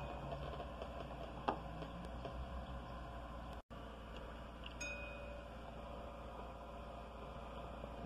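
Faint steady low hum of room tone, with a single click about one and a half seconds in and a momentary dropout to silence a little before halfway.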